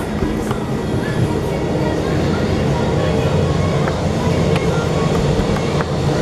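Boeing 737-700's CFM56-7B jet engines running steadily at taxi power as the airliner taxis, a loud even noise with a low drone held throughout.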